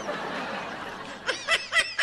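A person laughing: a long breathy exhale, then quick pitched laughing pulses, about four a second, from a little past halfway.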